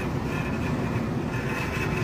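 Steady background noise with a low hum, unchanging throughout.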